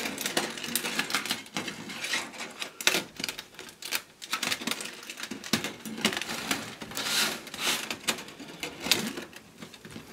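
Stainless steel expanded metal lath being rolled up tightly by hand: an irregular run of metallic clicks, scrapes and rattles as the mesh flexes and catches.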